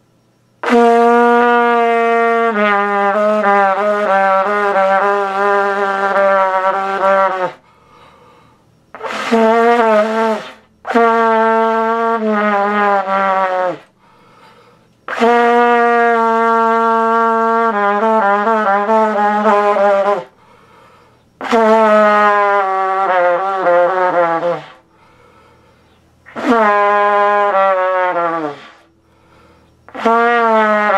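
Trumpet played in six phrases of mostly low held notes, each phrase ending with a downward slide in pitch, with short pauses between phrases.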